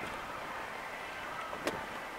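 Steady city background noise with traffic hum, and one sharp click near the end.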